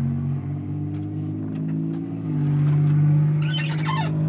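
The 352 cubic-inch V8 of a 1958 Ford Fairlane 500 Skyliner idling steadily, its note shifting slightly and getting a little louder about halfway through.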